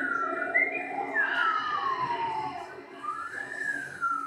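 Live-looped improvised music: high, whistle-like tones slide down and then up and down again like a siren, over a steady low looped drone.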